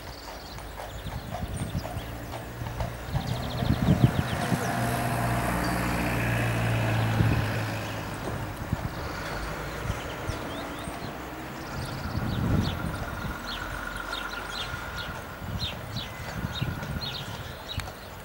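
Hooves of a Breton draft mare and a young horse clip-clopping on a road as the horses draw a covered wagon, the hoofbeats clearest in the second half at a few per second. In the first half a low engine hum runs underneath.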